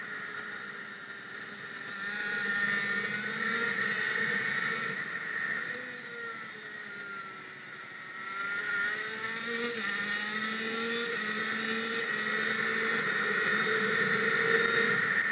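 Racing kart engine at speed, heard from a camera on top of the driver's helmet. Its revs drop for a corner about a second in and again, more deeply, around seven to eight seconds in, then climb back up each time.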